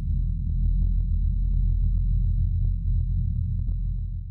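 Electronic outro sound for the logo: a deep, steady rumbling drone with a thin high steady tone above it and faint irregular ticks, several a second.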